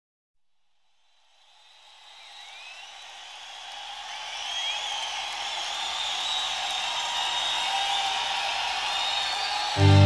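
Live concert crowd cheering and whistling, fading in from silence and growing steadily louder. Just before the end an acoustic guitar chord starts, loud and sustained.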